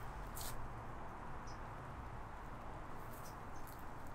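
Quiet background noise with a few brief, faint high-pitched ticks or rustles, one near the start and a couple near the end.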